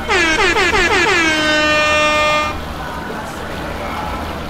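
An air horn: a rapid string of short blasts, each sliding down in pitch, running into one long held note that stops about two and a half seconds in.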